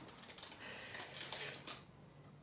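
Faint rustle of a clear plastic sleeve holding a craft stencil, with a few soft crinkles between about one and two seconds in.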